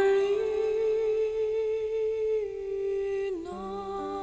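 Music: a long held vocal note over quiet accompaniment. The note dips briefly in pitch near the end as lower sustained notes come in underneath.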